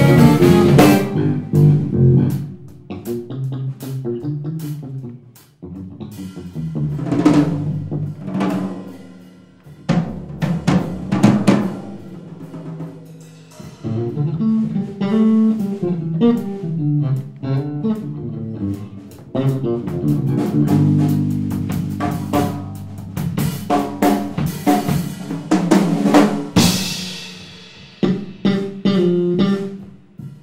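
Live jazz-rock band playing, with a drum kit and electric guitar to the fore over bass and Rhodes electric piano. The playing comes in loud passages broken by short breaks, with a cymbal crash near the end.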